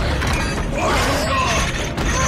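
Loud film fight sound effects for two giant creatures grappling: metal creaking and grinding over a deep rumble.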